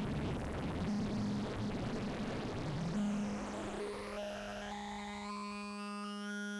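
Synthesizer saw wave through a BMC105 12-stage JFET phaser with the resonance turned up. For the first few seconds it sounds dense and noisy, then it settles into a steady buzzing tone whose upper overtones sweep upward in pitch near the end.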